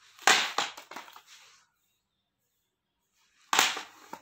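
Plastic audio cassette cases clattering down onto stone floor tiles, twice, about three seconds apart: each a sharp clack followed by a short rattle as the cases settle.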